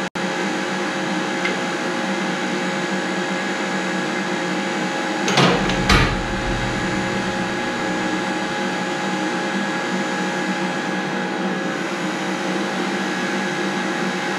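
Steady electric motor hum with fixed tones, running unchanged throughout. Two short metal clunks a little after five and at six seconds, as the steel tube is shifted through the bender to the next bend line.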